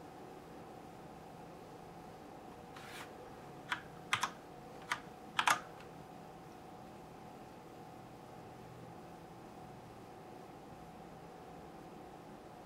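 A handful of computer keyboard key clicks, about six in quick succession in the middle, over a faint steady tone.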